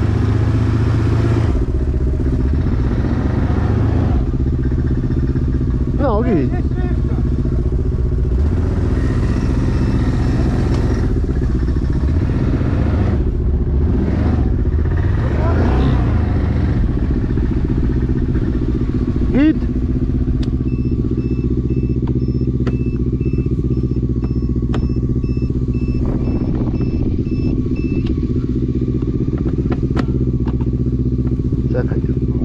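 Odes 1000 utility ATV engine running under load while it tows a mud-stuck sport quad on a strap, the revs rising and falling a few times. From about two-thirds of the way through, a steady electronic beeping repeats for several seconds.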